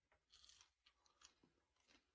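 Near silence, with a few faint clicks of a person biting and chewing a french fry.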